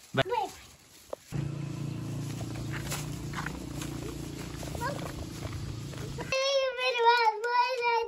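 A steady low hum fills most of the stretch. About six seconds in, a young child's high-pitched voice starts, singing or humming in long wavering notes.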